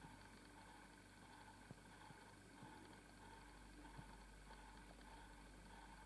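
Near silence: faint steady room tone, with a couple of faint small ticks.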